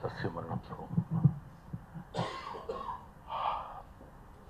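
A man speaking a few halting words into a handheld microphone, followed by two short breathy noises, one about two seconds in and one near three and a half seconds.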